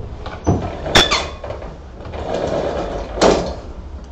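A pull-down projection screen being drawn down by its pull rod: sharp clacks about half a second and a second in, a rattling, scraping stretch as it unrolls, and a loud clack a little after three seconds.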